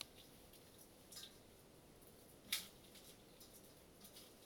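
Hands mixing moss and sphagnum potting substrate in a stainless steel bowl: faint rustles, one about a second in and a louder one about two and a half seconds in.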